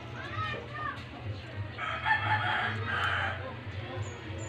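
A rooster crowing once, starting about two seconds in and lasting about a second and a half, after a few short rising-and-falling calls near the start.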